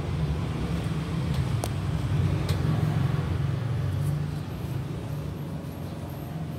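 A steady low rumble that swells a couple of seconds in and eases off after about four seconds, with a couple of light clicks.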